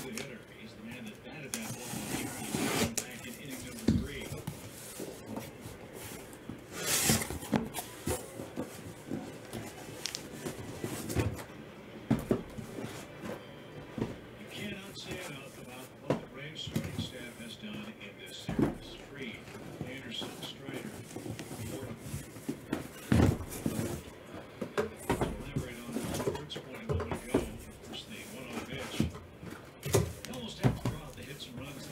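Cardboard trading-card hobby boxes being handled and set down on a table, with irregular knocks and scrapes.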